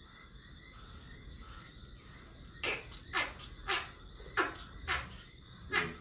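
A young African elephant calf suckling formula from a milk bottle's teat: a run of sharp, short sucking sounds about two a second, starting about two and a half seconds in.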